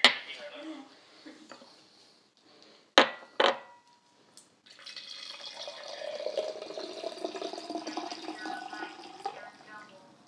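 Metal cocktail shaker: its cap knocks down on the stone counter, two sharp metal clanks with a brief ring follow about three seconds in, then the mixed drink pours from the shaker through its strainer into a glass for about five seconds, the pour's pitch rising slightly near the end as the glass fills.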